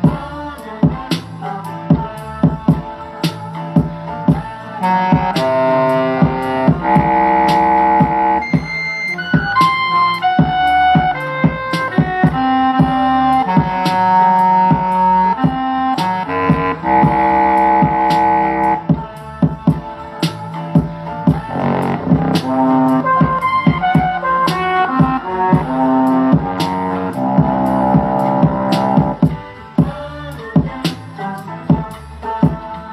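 East Coast-style hip-hop beat playing back, built on a sample from a Latin record. Steady drum-machine hits run under sampled horn chords, which come in about five seconds in, drop out briefly past the middle and return.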